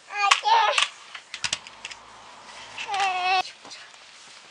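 A high-pitched voice making two short wordless sounds, the first quick and broken, the second a longer held tone, with a few light clicks in between.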